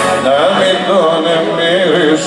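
Live acoustic music from the intro of a Greek song: a wavering, ornamented melody line over acoustic guitar.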